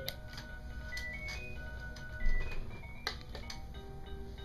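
Electronic toy drum set playing a simple beeping melody, note after note, with a few sharp clicks and a low thump about two seconds in.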